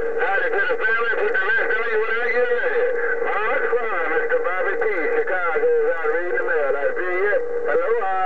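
A voice coming in over a President HR2510 radio's speaker on 27.085 MHz, thin and narrow in tone, with a steady tone running beneath it.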